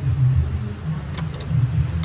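An uneven low rumble runs throughout, with a few light clicks about a second in as the plastic bottom cover of a mixer grinder's base is handled and fitted.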